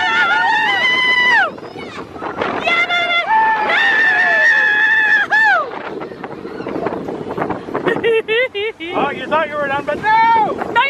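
Riders on a mine-train roller coaster screaming: long, high held screams, then shorter wavering cries near the end, over the noise of the moving train and wind.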